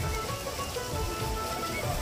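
Water from fountain jets splashing steadily into a pool, a rain-like patter, with faint music behind it.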